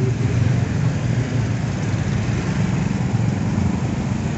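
A motor vehicle engine idling with a steady low rumble.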